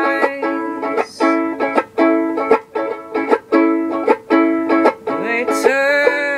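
Banjolele (banjo ukulele) picking a repeating arpeggiated chord pattern, bright plucked notes following one another at an even pace.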